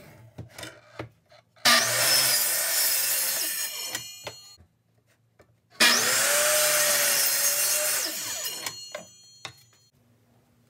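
Electric miter saw run twice, each time for about two and a half seconds: the motor starts suddenly and whines up to speed as the blade cuts into a plywood board, then winds down with a few ticks. A few small clicks of handling come before the first cut.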